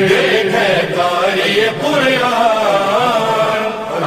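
A man chanting a manqabat, the Urdu devotional hymn in praise of Ali, unaccompanied. The melody is drawn out in long, wavering held notes.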